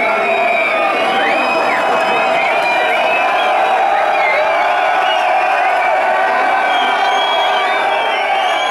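A concert crowd cheering, whooping and shouting, loud and steady throughout.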